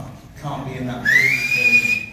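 A voice in the first second, then a loud whistle from the audience about a second in: it rises in pitch, then holds steady for about a second.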